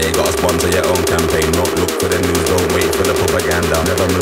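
Tech house track playing in a DJ mix: a steady bassline under a rapid, even hi-hat pattern, with short chopped vocal snippets over it.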